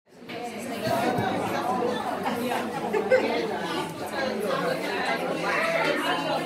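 Many people talking at once, indistinct chatter in a large room, coming in abruptly out of silence.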